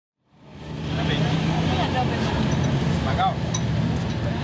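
Busy street-market ambience fading in during the first second: scattered voices talking over a steady low rumble of traffic.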